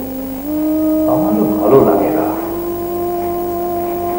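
Background music: long sustained melodic notes, held steady and stepping up in pitch twice.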